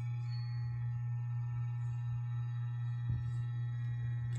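Cordless electric hair clipper running with a steady, low-pitched hum, with a light bump about three seconds in.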